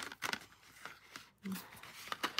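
Small cardboard retail box being handled and opened by hand: light rustling with a few small clicks and scrapes.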